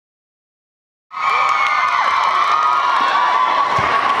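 Crowd of spectators cheering and screaming with high, shrill voices, starting suddenly about a second in after silence.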